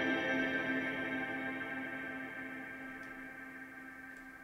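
An electronic keyboard chord, played just before and held, fading slowly over about four seconds.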